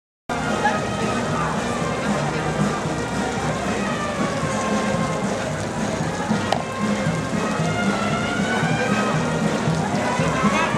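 Crowd of people talking over music, cutting in abruptly just after the start and running on as a steady, fairly loud mix of voices and instruments.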